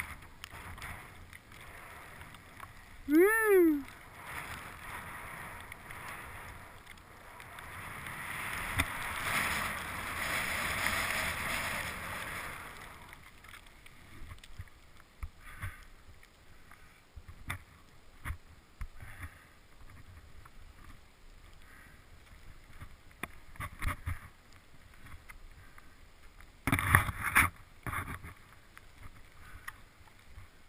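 Skis hissing through deep fresh powder snow, the rush of snow swelling for several seconds in the middle. A short whoop that rises and falls in pitch comes about three seconds in, and a brief loud burst of noise near the end.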